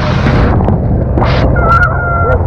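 Waves breaking and spray hissing over a semi-submerged hull, in two surges, over a heavy low rumble of wind buffeting a body-worn camera and boat engines running. A short high honk-like tone sounds near the end.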